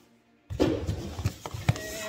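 Cardboard box being grabbed and tipped, with loose foam packing peanuts rustling and shifting inside. The rustling starts suddenly about half a second in, with a few sharp knocks.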